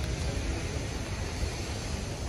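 Wind buffeting the phone's microphone: a steady, fluttering low rumble with hiss.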